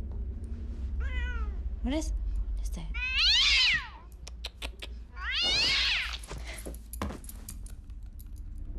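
A cat meowing: a short meow about a second in, then two long, loud meows that rise and fall in pitch.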